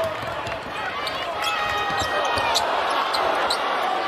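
A basketball being dribbled on a hardwood court, a series of short knocks, over steady arena crowd noise with some shouting voices.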